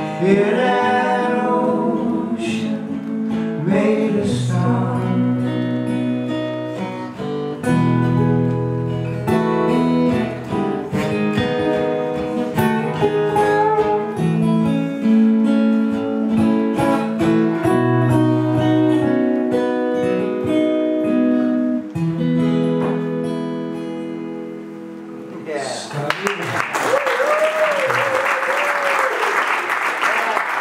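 Two acoustic guitars play the song's closing instrumental passage, which winds down about 25 seconds in. Audience applause follows.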